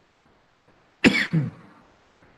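A person coughs twice in quick succession about a second in, short and sharp.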